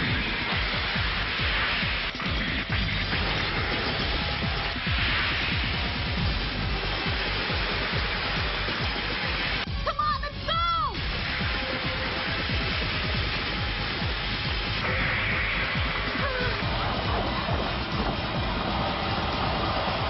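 Animated battle soundtrack: background music over a continuous rushing noise of clashing-machine sound effects. A short shout comes about ten seconds in.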